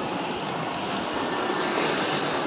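Steady, even rushing background noise of a large indoor shopping-mall hall, with no distinct events.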